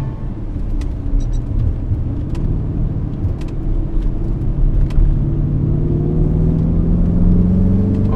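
Porsche Cayenne Turbo's twin-turbo V8 heard from inside the cabin, pulling on part throttle and rising steadily in pitch through the second half as the SUV accelerates. A few light clicks sound early on.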